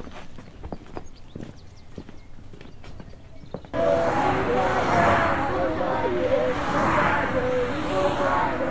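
Footsteps on a dirt yard with scattered soft clicks, then suddenly, about halfway through, a group of children shouting and calling out over one another as they play.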